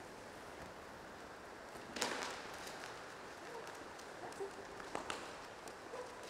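Quiet, with a short scuffing noise about two seconds in and a few faint taps later: a young spaniel setting off and running out after a thrown puppy dummy.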